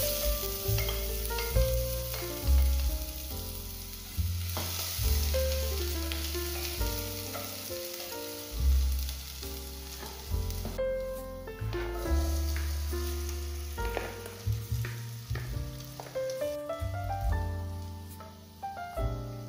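Chopped onion sizzling as it fries in hot olive oil in a stainless steel pot, under background music. The sizzle cuts off suddenly about eleven seconds in, leaving the music.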